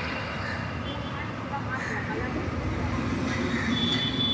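Steady low rumble of outdoor background noise with faint, indistinct voices, and a thin high tone starting near the end.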